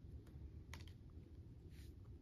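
Faint handling of paper photocards: a few light clicks and taps as the cards are shuffled, with a brief soft rustle near the end.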